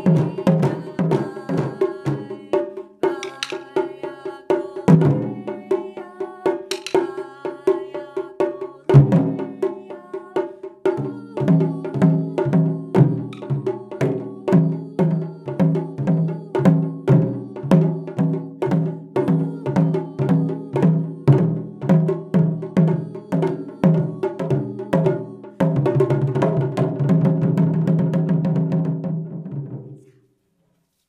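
Taiko drums (nagado-daiko) struck with wooden bachi by several players in a steady beat of about two strokes a second. Near the end it becomes a fast continuous roll that cuts off suddenly.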